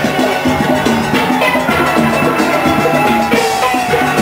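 A steelband playing live: steel pans ringing out a repeating, rhythmic tune over drums with a steady beat.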